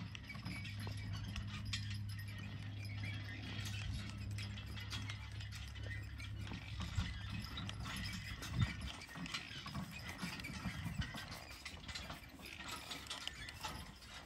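Metal harness hardware on a hitched team of Percheron draft horses clinking and rattling in small, irregular clicks as the horses shift and step. Under it is a low steady hum that fades out about halfway through.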